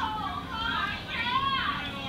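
A recorded voice from an FBI audiotape of a telephone scam call, announcing a cash grand prize with big swings in pitch, played back over a lecture room's loudspeakers.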